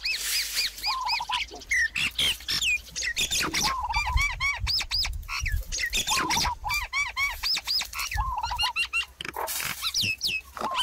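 Several birds calling and singing over one another: quick rising and falling whistled notes, with a lower warbling phrase coming back every two to three seconds.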